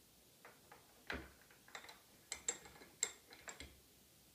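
A dozen or so small, irregular clicks and taps as the locking pin is slid through the anti-rebound bar mount of a Clek Foonf car seat and its cotter pin is clipped in to lock it.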